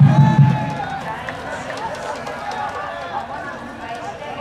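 Stadium public-address announcer's voice echoing across the ballpark while reading out the starting lineup, loudest in the first half second.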